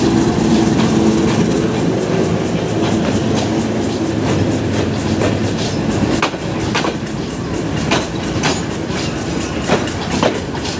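Diesel locomotive passing close by with its engine running steadily, followed by passenger coaches rolling past, their wheels clacking over rail joints about once a second in the second half.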